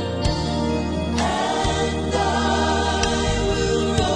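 A Christian song with choir singing over instrumental accompaniment, sustained notes changing chord about once a second.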